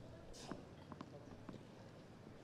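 Tennis ball bounced on a grass court before a serve: a few soft knocks about half a second apart over faint crowd hush.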